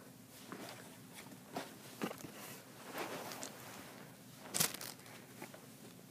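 Handling noise from the visor's packaging and parts: scattered clicks, crinkles and rustles, with one louder rustle about four and a half seconds in.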